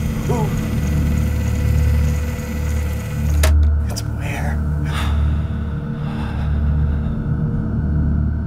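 Trailer sound design: a deep, slowly pulsing bass drone with faint held tones above it, and a single sharp hit about three and a half seconds in, as the title appears.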